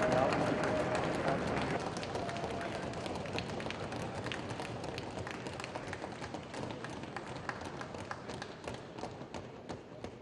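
An assembly chamber full of people applauding, sharp claps or desk taps over a bed of crowd voices, dying away gradually toward the end.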